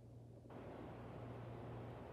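Quiet room tone: a steady low electrical hum with a faint hiss that rises suddenly about half a second in.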